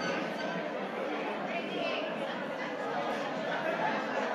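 Background chatter of several people talking at once in a room, steady throughout.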